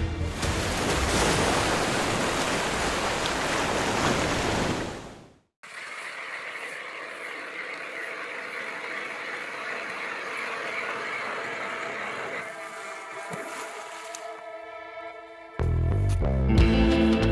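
A loud, even rushing noise like surf for about five seconds, fading out into a moment of silence. Then a steadier, quieter hum and grind of an electric ice auger drilling through lake ice, until music comes in at the very end.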